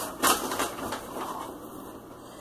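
Packaging being handled off-camera: a brief crinkle and rustle just after the start, fading to quiet handling noise.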